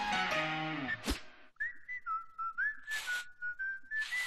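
A cartoon's closing music ends in a falling run of notes and a short swoosh. About a second and a half in, a single whistled tune starts, stepping from note to note, with a couple of brief swooshes under it.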